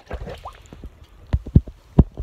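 Handling noise on a phone's own microphone: low rubbing with a few short knocks, the loudest right at the end.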